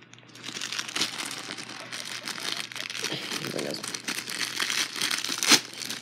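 Plastic candy bag crinkling as it is handled close to the microphone, with a sharp snap near the end.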